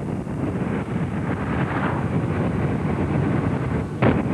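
Steady rush of wind on the microphone with road and engine noise from a camera vehicle moving at racing speed alongside a time-trial cyclist.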